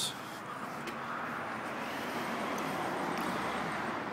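A car passing on the street: a steady hiss of tyre and engine noise that slowly grows louder.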